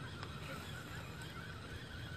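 Faint goose honking over low wind noise.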